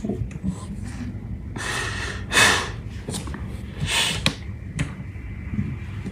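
A man breathing hard and gasping while weeping: long, noisy breaths about a second and a half in and again about four seconds in.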